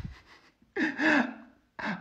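A man's exaggerated, theatrical gasp: a short voiced cry about a second in, then a quick breath in.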